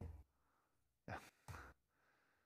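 Near silence broken by two short breaths from a person, about a second in and a second and a half in.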